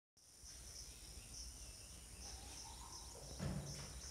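Faint room tone with insects chirping in short, high, repeated pulses over a low steady hum, and one brief thump about three and a half seconds in.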